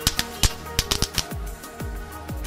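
Small Category F1 'Knallkraut' firework crackling on gravel: a quick string of about seven sharp pops in the first second and a half, over background music with a beat.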